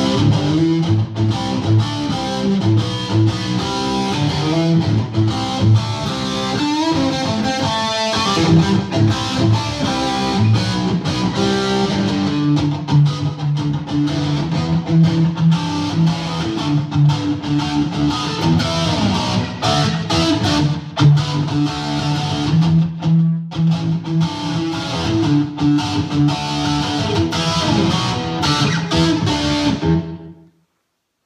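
1964 Gibson SG electric guitar with two P-90 pickups, played through an amplifier: a continuous run of chords and single-note lines with one brief break about 23 seconds in.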